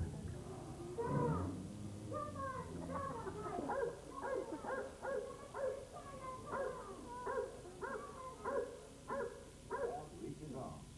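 Recorded dog barking and yipping from a show's audio-animatronic family dog: a run of short yelps, about one or two a second, beginning a few seconds in.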